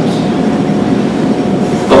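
Steady background noise with a faint low hum, even throughout with no sudden sounds.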